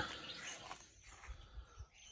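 Faint outdoor background with distant bird calls.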